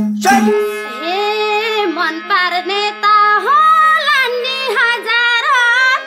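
A woman singing a line of a Nepali lok dohori folk song in a high, ornamented voice over a low steady held tone, taking up her turn in the sung exchange. The group's rhythmic hand-clapping stops about half a second in.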